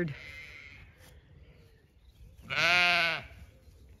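A Zwartbles sheep bleating once, about two and a half seconds in, a single call of under a second with a slight rise and fall in pitch.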